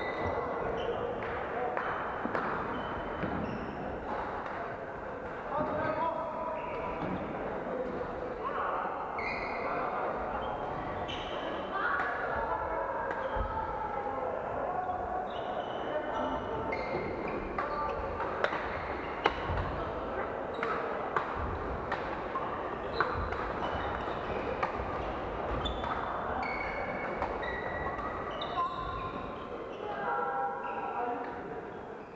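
Badminton rallies in a large echoing hall: sharp racket hits on the shuttlecock, sneakers squeaking on the wooden court floor, and players' voices calling in the background.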